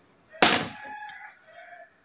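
A rooster crowing once: a sharp start followed by a drawn-out, pitched call lasting about a second and a half.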